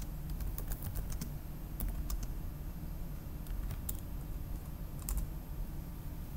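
Computer keyboard typing: irregular keystrokes in short clusters as a terminal command is entered, over a faint steady hum.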